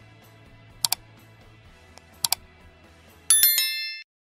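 Mouse-click sound effects, one about a second in and a quick double click just past two seconds, over faint background music. Then a bright bell chime, the loudest sound, rings out near the end and cuts off.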